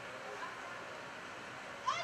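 Open-air ambience of a youth football pitch with faint distant voices, then a short, high, rising shout from a young player near the end.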